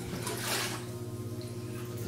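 Water sloshing and splashing in an inflatable hot tub as a person moves and rises in it, strongest about half a second in. A steady low hum runs underneath.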